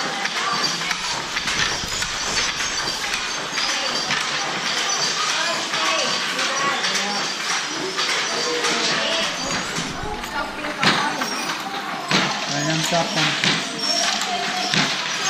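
Indistinct chatter of several voices in a hall of wooden silk hand looms, with scattered wooden knocks from the looms being worked.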